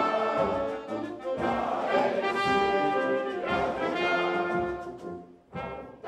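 Brass band playing an anthem, with a standing assembly singing along; the music pauses briefly about five and a half seconds in.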